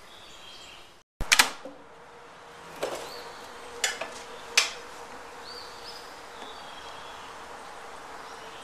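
Sharp clicks and knocks of a rifle being handled on a wooden shooting bench: a quick cluster about a second in, then three single knocks about a second apart. Birds chirp now and then over a faint steady hum.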